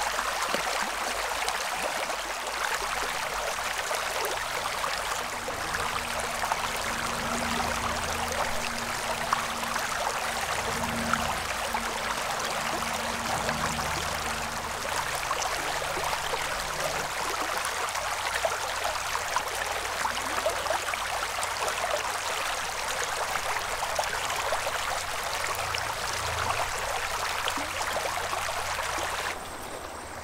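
Shallow stream water running over rocks, a steady babble close by. It drops in level just before the end.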